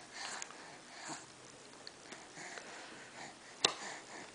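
Soft sniffing and breathing in short puffs close to the microphone, with one sharp click a little before the end.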